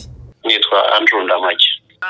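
A man's voice speaking over a telephone line for about a second and a half, thin and tinny with the low and high end cut off.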